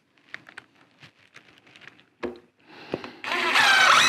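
A few light clicks and two knocks of handling, then, about three seconds in, a cordless drill starts running, driving a screw into the wooden window buck frame, its whine bending in pitch.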